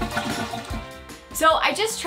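Background music fading out over a toilet flushing, then a woman starts speaking about a second and a half in.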